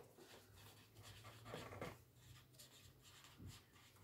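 Faint scratching of a felt-tip marker writing by hand on paper, a run of short strokes that grows a little louder about one and a half seconds in.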